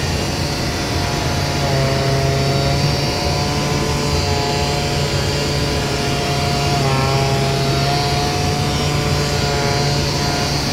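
Pneumatic 3x4 sander with a foam abrasive pad running steadily, sanding a flat MDF panel as the robot arm moves it, with a steady hum and a high whine, and its tone shifting briefly about seven seconds in.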